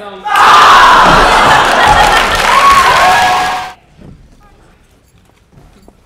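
A crowd of voices cheering and yelling loudly together for about three and a half seconds, then cutting off suddenly.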